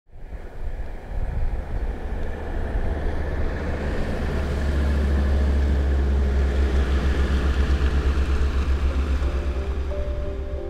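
A station wagon driving past with a deep engine rumble that builds over the first few seconds, holds, then eases near the end as music comes in.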